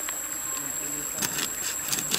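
Large knife cutting into a garlic bulb on a wooden board, a short run of crisp crunches a little over a second in. Behind it a steady high-pitched insect drone.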